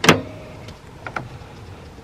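The driver's door of a 1992 Honda Accord being opened: one sharp latch click right at the start, then a few faint clicks as the door swings open.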